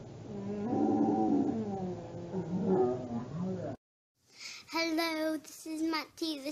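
A child's voice making drawn-out vocal sounds that waver up and down in pitch, cut off abruptly just under four seconds in. After a short silence, a child sings held notes.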